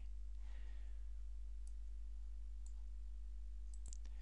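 Computer mouse button clicking a few faint times, two of them close together near the end, over a steady low hum.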